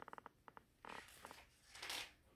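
Faint rustling and light clicking of a picture book's pages being handled and turned, with a louder paper swish near the end.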